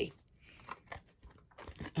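Thin cut acrylic sheet with its plastic protective film being picked up and flexed by hand: faint crinkling with a few small clicks.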